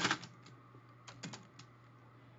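IBM Selectric typewriter switched on with its cover off: a sharp clack from the mechanism at the start, then the faint steady hum of its running motor with a few light clicks.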